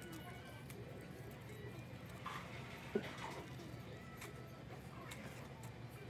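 Faint dining-room background: a steady low hum and distant voices, with a few small clicks and one sharper knock about three seconds in as food trays and paper wrappers are cleared off a table.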